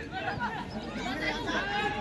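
Several voices talking and calling out at once, overlapping chatter with no single clear speaker, from people at a football match.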